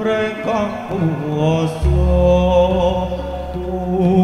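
Javanese gamelan music with a voice singing a sliding, chant-like melodic line. A deep, sustained low tone comes in about two seconds in and holds under the ensemble.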